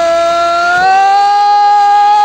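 Ground spinner firecracker (chakri) spinning and giving off a loud, steady, high whistle whose pitch rises slightly about a second in.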